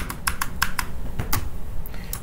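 Computer keyboard keys being pressed: several separate short clicks at an uneven pace, with a longer gap after the first second.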